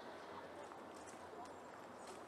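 Faint footsteps of a person walking on a gravel and leaf-covered path, a regular step about twice a second over quiet outdoor background.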